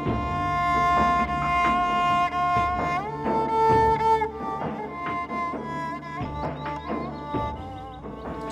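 Slow, sad background score of bowed strings: long held notes over a low steady drone, with the melody stepping up to a higher note about three seconds in.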